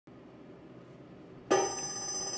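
Faint hiss for about a second and a half, then a karaoke backing track comes in suddenly with a bright, sustained, bell-like chord.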